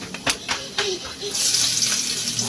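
Chopped tomatoes pushed off a plate with a wooden spatula into hot oil in a wok: a few light taps, then a loud sizzle breaks out about a second and a half in and keeps going.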